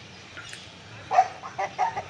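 Short, loud animal calls, about four in quick succession starting a second in, over quiet yard background.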